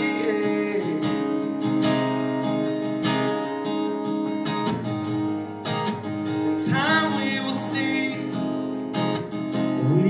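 Acoustic guitar strummed through the chords of a slow song in an instrumental passage between sung lines.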